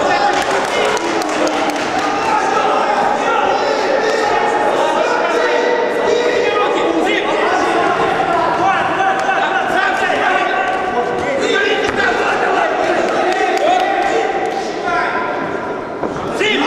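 Men shouting at a kickboxing bout, several voices overlapping and echoing in a large sports hall, with repeated dull thuds of blows landing and feet on the ring floor.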